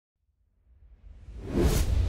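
Whoosh sound effect swelling up out of silence from about a third of the way in, with a deep rumble under it, as an intro logo animation opens.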